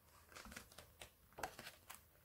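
Faint rustling and a few soft ticks of paper as a sheet of a Crate Paper Fresh Bouquet patterned paper pad is turned over by hand, the loudest rustle about one and a half seconds in.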